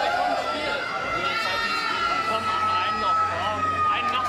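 Crowd of people talking and calling out over one another, with a long high steady tone that falls slightly in pitch held through most of it.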